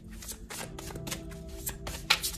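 A deck of tarot cards being shuffled by hand: a quick, irregular run of card snaps and flicks. Soft background music plays underneath.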